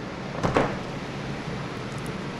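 A single short clunk about half a second in, from the soft-plastic hand injector and clamped aluminum mold being handled on the bench. Under it runs the steady hum of a box fan.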